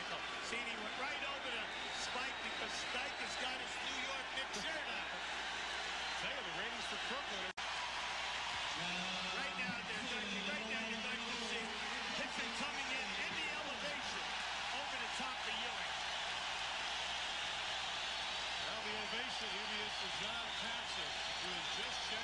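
Basketball arena crowd noise from a game broadcast: a steady din of many voices. It is broken by a brief dropout about seven and a half seconds in.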